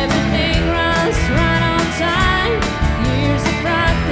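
Live band playing a country-rock song: electric guitars, bass, drums and keyboard, with a woman singing lead.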